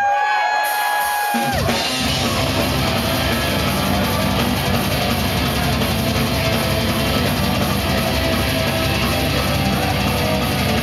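Power metal band playing live: a single long held note, rising in at the start, gives way about a second and a half in to the full band with drums and distorted electric guitars.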